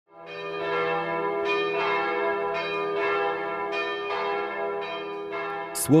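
Bells ringing, struck about seven times at uneven intervals, each tone ringing on and overlapping the next; the sound fades in at the start. A man's voice begins speaking at the very end.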